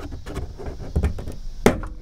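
Plastic trim screws being worked up out of a car's rear deck panel: scattered taps and knocks of plastic, with a low thump about halfway and one sharp click near the end as a screw pops up.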